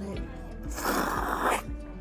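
A person slurping cold soba noodles from a dipping cup: one noisy slurp lasting about a second, near the middle, over background music.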